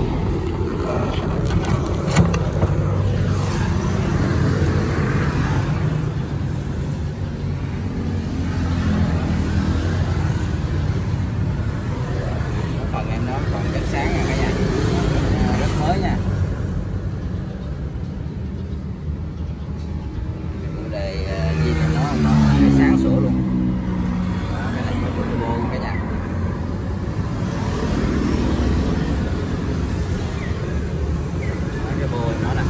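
Turbocharged diesel engine of a Kubota L1-33 tractor running steadily, heard close up at the open engine bay. It grows louder for a few seconds about three-quarters of the way through.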